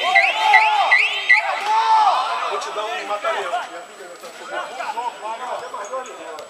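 Several people's voices overlapping, calling and chattering. Over the first second and a half runs a quick series of identical high chirping tones, about three a second, that then stops.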